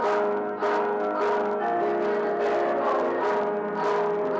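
Youth choir singing with instrumental accompaniment, holding sustained chords that change about once a second.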